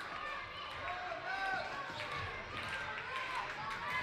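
Live indoor floorball game sound: faint distant shouts from players and crowd, with occasional light clicks of sticks on the plastic ball.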